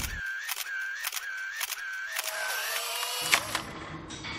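Camera shutter sound effect: a series of shutter clicks about every half-second, each followed by a short whine, ending in a louder click a little over three seconds in.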